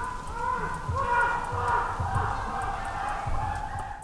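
Unidentified calls at night, heard from inside a shelter: a run of short cries that rise and fall in pitch, about two a second, with low thumps underneath.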